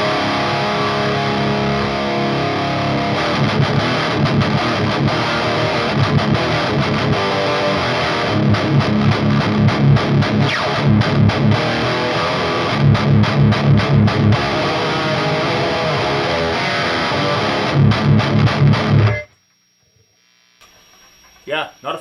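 Heavily distorted electric guitar played through a Finch Electronics Scream overdrive pedal on its 'scream' switch setting, aggressive riffing with heavy low chugs that come back several times. The playing cuts off suddenly about three seconds before the end.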